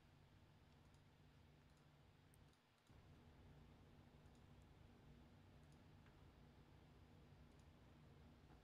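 Near silence: a faint, steady low hum of room tone with a few faint scattered clicks. The hum drops away briefly about two and a half seconds in.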